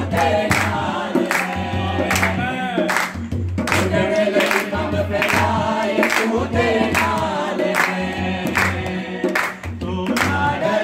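A congregation singing a Punjabi Christian worship song together, with hand clapping and a dholak drum keeping a steady beat.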